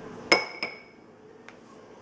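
An upturned drinking glass set rim to rim on top of another glass: two sharp glass clinks about a third of a second apart, each ringing briefly, the first the louder, then a faint tick about a second later.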